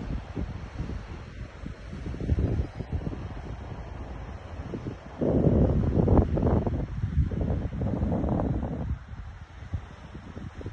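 Wind buffeting a phone's microphone in uneven gusts, with a stronger, louder gust from about five seconds in that lasts some four seconds.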